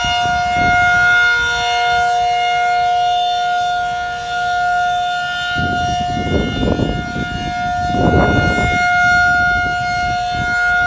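Federal Signal 2001 DC outdoor warning siren sounding a steady, unwavering tone, its loudness gently swelling and fading. Two bursts of low rumbling noise come about six and eight seconds in.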